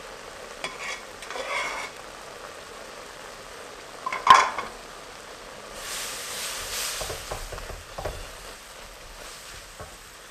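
A wooden spoon stirring and scraping food in a hot black steel wok, with frying sizzle that swells about six seconds in. A single sharp knock, the loudest sound, comes about four seconds in.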